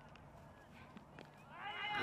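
Quiet open-air cricket-ground background with a few faint, sharp clicks. A man's commentary voice comes in near the end.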